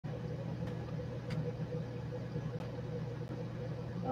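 A steady low hum with a faint higher tone running through it, and a few faint ticks.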